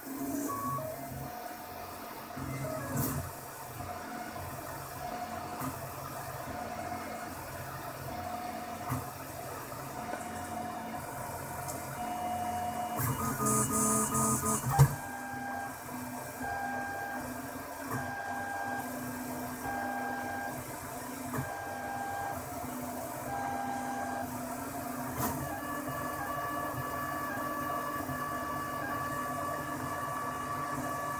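MendelMax 1.5 3D printer running a print, its stepper motors whining as the head and bed move, the pitch changing with each move. In the middle there is a regular on-off run of short, quick moves, and a sharp click about halfway through.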